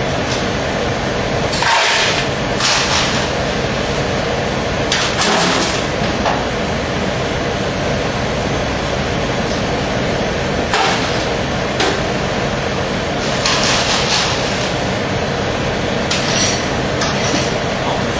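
Ice cubes clattering in several short bursts as they are scooped into a cup and tipped into a blender jar, over a steady background hiss.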